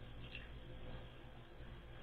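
Faint, nearly quiet room tone: a steady low hum with one faint tick about a third of a second in.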